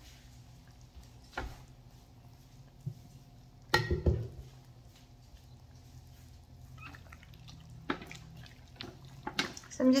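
Quiet kitchen with a faint steady low hum and a few scattered knocks and clicks as a mixing spoon is fetched; the loudest knock comes about four seconds in.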